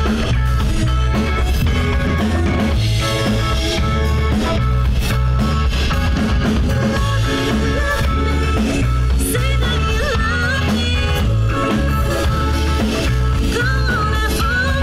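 Live rock band playing a song: electric bass, drum kit and electric guitars over a steady beat.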